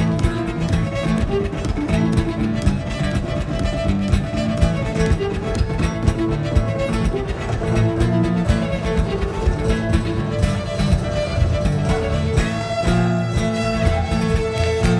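Live contra dance music: a fiddle tune over guitar, with a steady beat stomped by foot on a wooden board.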